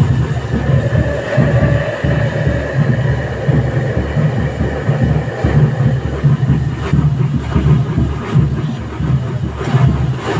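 Tower of fountain fireworks burning with a continuous low, rumbling roar that pulses unevenly. A faint steady whistle runs through roughly the first half.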